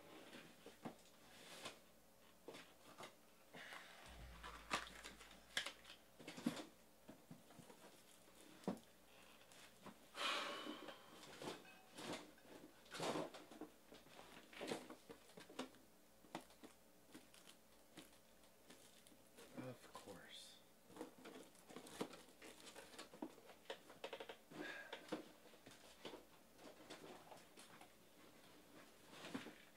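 Faint, irregular soft clicks and rustles of trading cards being handled and sorted.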